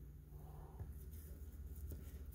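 Faint rustle of hands handling trading cards and a plastic card holder, with a soft tick just under a second in, over a low room hum.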